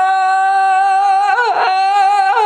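A man singing a long, high, sustained vowel on one steady pitch. About one and a half seconds in, the note briefly breaks and dips before it is picked up again: a vocal crack.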